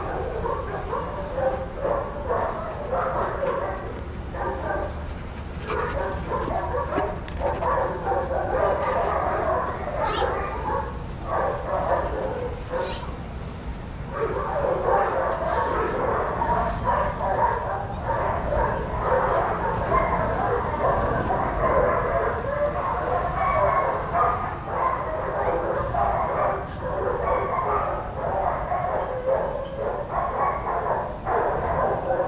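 Many dogs barking at once in a continuous, overlapping chorus, louder from about halfway through.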